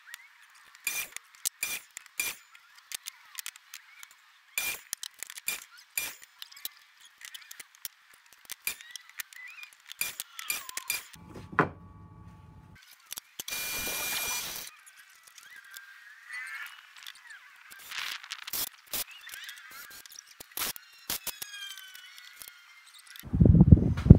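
Workshop clatter of wood and tools being handled: many separate clinks, knocks and scrapes, with a steady power-tool burst of about a second near the middle.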